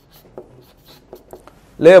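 Felt-tip marker writing on flip chart paper: a quick run of faint, short scratching strokes. A man's voice starts near the end.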